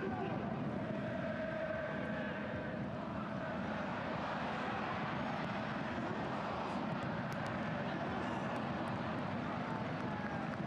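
Steady crowd noise from the stands of a football stadium during open play.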